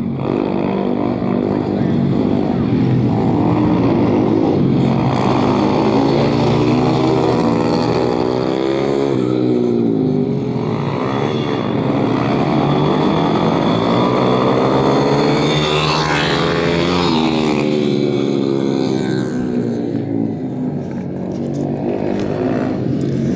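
Motorcycle engines running on a course, revving up and down so the pitch rises and falls again and again as the bikes accelerate and slow. At times two engines are heard at once.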